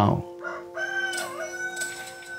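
A rooster crowing once: a long, held call of about a second with a few shorter notes leading into it, over soft ambient music with sustained low notes.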